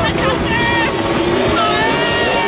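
Cartoon character wailing and crying out in drawn-out, wordless cries, with a scooter engine running underneath.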